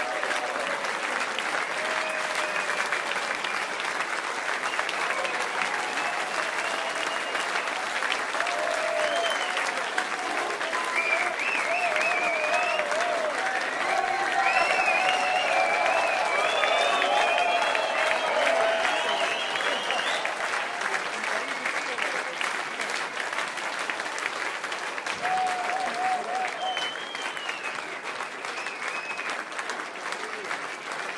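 Audience applauding and cheering, with shouts and whistle-like calls over the clapping. It swells to its loudest around the middle and tapers off toward the end.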